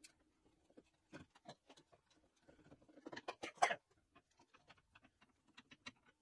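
Small metal bar clamps clicking and clattering as they are put on and tightened around a freshly glued wooden assembly, with light knocks of wood and metal parts. The clicks come irregularly, with the loudest cluster about three and a half seconds in.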